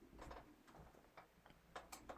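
Near silence with a few faint, short ticks: the small clicks of steel pliers gripping and bending twisted wire.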